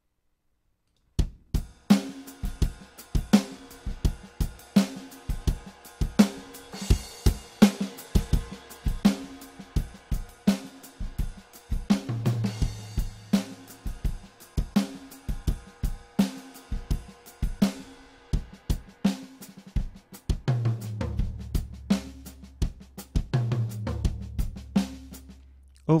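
Sampled acoustic drum kit from Toontrack's Americana EZX library, the Fibes kit, playing back a folk-style MIDI groove: a steady pattern of bass drum, snare, hi-hat and cymbals. It starts about a second in. Low drum hits ring longer around the middle and near the end.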